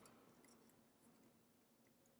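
Near silence, with a few faint, short metallic clicks from a third-hand soldering helper's alligator clip as a circuit board is fitted into it.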